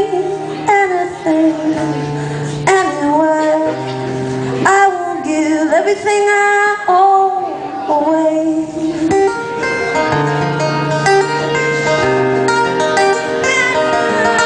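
A woman singing live to her own strummed acoustic guitar. Her voice slides between notes for the first nine seconds or so, then settles into steadier held notes over the guitar.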